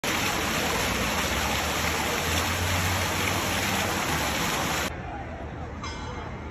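Fountain jets splashing: a loud, steady rush of water that cuts off abruptly about five seconds in, leaving a quieter murmur of crowd voices.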